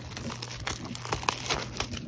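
Plastic shrink wrap crinkling and tearing as it is pulled off a sealed trading card box, a dense run of quick crackles.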